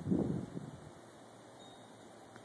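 A brief muffled rumble on the phone's microphone in the first half second or so, then faint steady hiss.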